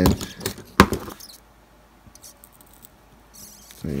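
A few small clicks and taps of fingers handling a wire on a mini-quad's flight controller board, pushing it back into place; the sharpest click comes just under a second in, then it goes quiet.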